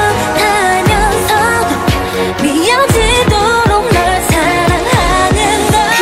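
K-pop song: a female vocal group singing over an electronic pop beat, with a run of bass notes that slide sharply downward, several a second, through the middle of the passage.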